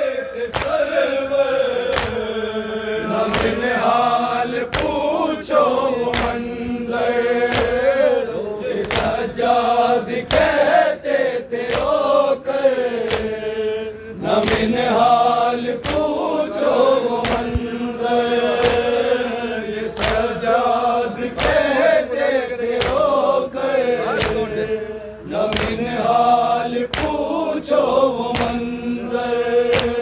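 A group of men chanting an Urdu noha (mourning lament) in unison, with a steady beat of open-hand slaps on the chest (matam) a little more often than once a second.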